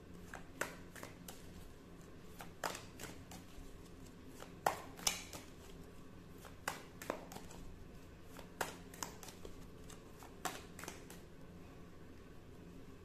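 Hands handling tarot cards: a series of light, irregular clicks and taps, about a dozen, with the sharpest pair a little before the middle.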